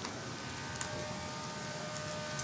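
Faint, steady background hum and hiss with a few faint steady tones and a small click about a second in.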